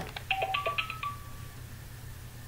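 Short electronic jingle from a LeapFrog children's learning toy's music mode: a few brief beeping notes, then one held higher note that stops about a second and a half in.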